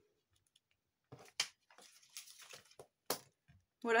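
Quiet handling sounds of papercraft: a sharp click, a short soft scuffing rustle, then another sharp click, from tweezers and a card being handled on a cutting mat.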